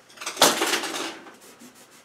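A cloth wiped across a painted canvas to clean off smeared wet oil paint: one brisk rubbing swipe about half a second in that fades out within a second.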